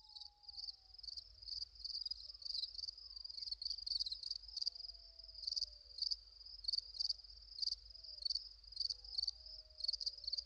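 Crickets chirping: a steady high-pitched trill that swells in pulses about twice a second.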